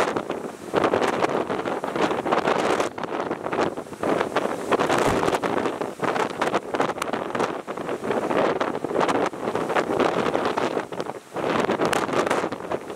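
Strong, gusting typhoon wind buffeting the microphone, with the rush of heavy storm surf breaking against a harbour breakwater beneath it.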